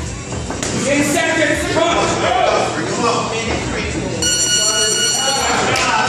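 Electronic buzzer of a boxing round timer sounding a steady tone for about a second and a half near the end, marking the end of the round, over voices and music in the gym.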